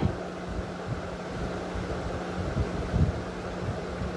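Background noise: an irregular low rumble on the microphone over a steady low hum, with a slightly stronger thump about three seconds in.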